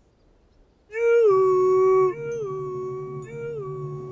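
A long howl-like call starting about a second in, held on one steady note after a short drop at its start, then heard three more times about a second apart, each fainter, like an echo. A low steady hum runs under it.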